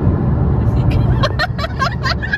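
Steady road and engine rumble of a car travelling at speed, heard from inside a moving car. From a little over a second in, a quick run of short, high-pitched sounds, about five a second, rides over the rumble.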